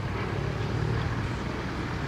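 A steady low engine rumble, with a faint steady hum in the first half.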